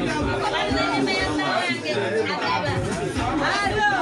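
Several people talking over one another: lively overlapping chatter in which no single voice stands out.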